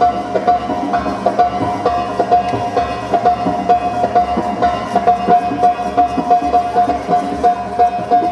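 Belly dance music with a quick, steady beat over a long held note.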